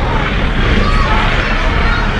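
Race car engines running as two cars race through a turn on a dirt oval, under a steady din of crowd chatter.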